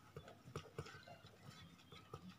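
Faint, irregular scratches and taps of a pen writing words on paper.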